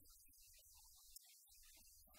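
Near silence: a faint low hum that drops out for a moment about a second and a half in, with one faint click just before.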